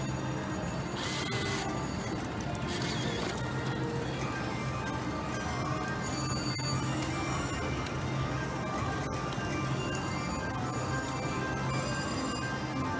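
Casino slot floor din: overlapping slot-machine jingles and chiming tones over a steady low hum. Two short bursts of hiss come about one and three seconds in.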